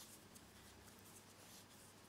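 Near silence, with faint soft rustles and ticks of cotton thread being worked onto a tatting needle by hand.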